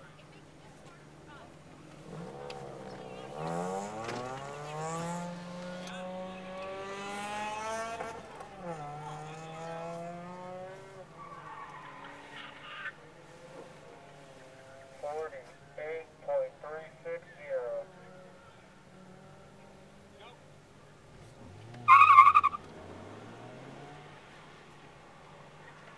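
Autocross cars heard from inside a car in the start grid, over a steady idle. An engine revs up from about two seconds in, drops once as it shifts, and revs again until about eleven seconds. Several short engine blips follow, then near the end comes a loud, brief tire squeal as the car ahead launches off the start line.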